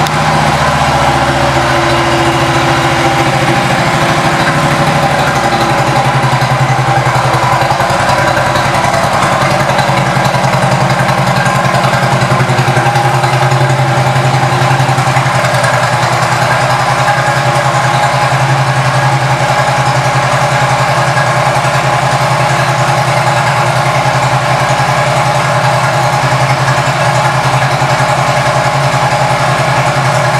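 Harley-Davidson Street Glide's air-cooled V-twin idling steadily through a Vance & Hines exhaust, settling a few seconds in after being started.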